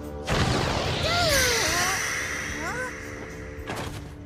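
Animated magic-spell sound effect: a sudden rumbling whoosh with a high hissing shimmer that slowly fades, over background music, with a girl's startled cries.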